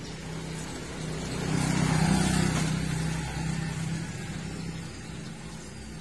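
A motor vehicle passing on the road, swelling to its loudest about two seconds in and then fading away.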